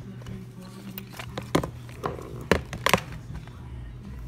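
Several sharp clicks and taps from a hard plastic castle sand mold being handled in a plastic tub of kinetic sand, the loudest about two and a half and three seconds in.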